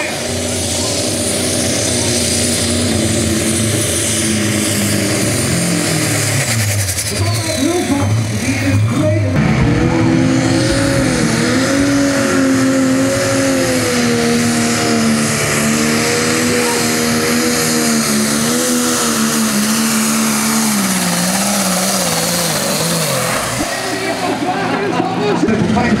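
Turbocharged diesel engines of Light Super Stock pulling tractors running hard under load, with a high turbo whistle. Over the first nine seconds one engine winds down, its pitch and whistle falling. About nine seconds in, the next tractor sets off and holds high revs with the pitch wavering, then eases off near the end.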